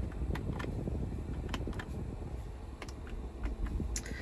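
Steady low rumble inside the cabin of a 2016 Jeep Wrangler, its 3.6 L V6 idling with the AC blower fan running, with a few light clicks of dashboard switch buttons being pressed.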